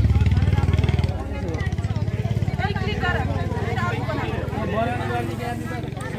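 An engine running at idle with a fast, even pulse, loudest for the first second and then fainter, under people talking in a crowd.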